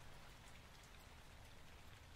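Faint rain: a soft, even hiss with scattered light drop ticks over a low rumble.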